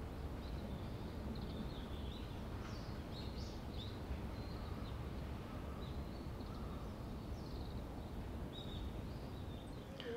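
Outdoor garden ambience: small birds chirping faintly and now and then over a steady low background rumble.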